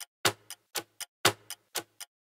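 Clock-ticking countdown sound effect: sharp, evenly spaced ticks about four a second, every fourth tick louder.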